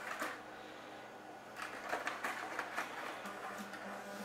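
Light handling noise: a series of small irregular clicks and scrapes as a die-cast model airplane and its cardboard-and-plastic packaging are handled, picking up about one and a half seconds in.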